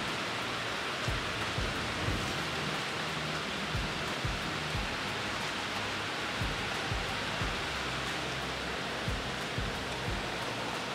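Steady rain on a metal roof, an even hiss of drops throughout. Under it, background music with a soft low beat about twice a second.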